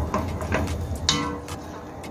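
A spoon knocking and scraping against the inside of a stainless steel pot while stirring beans in their liquid, a few light clicks with one stronger ringing knock about a second in.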